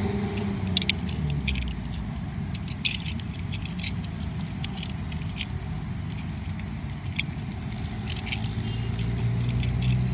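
Plastic Transformers Megatron toy robot being transformed by hand: scattered small clicks and rattles as its plastic parts and joints are pressed and turned, over a steady low rumble in the background.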